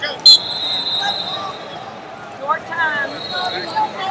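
Indistinct shouting voices echoing in a large sports hall, with a sharp high whistle-like tone just after the start that holds for about a second.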